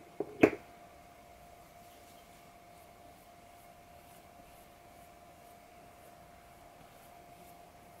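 Quiet room tone with a faint steady hum, broken once by a short sharp tap about half a second in.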